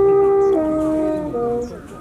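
Natural horn played to call deer: a note slides up into a held tone, then steps down to a lower held note and a short lower one, dying away near the end.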